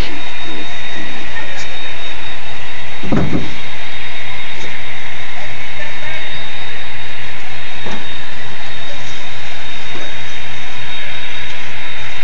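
Steady hiss and hum of a room with a few faint, indistinct voices in the background, with two thin steady tones running through it.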